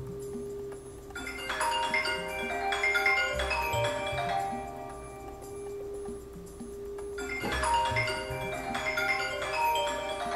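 Background music: a bright struck-note melody like marimba or xylophone over a held tone and bass notes, the phrase coming in about a second in and repeating about six seconds later.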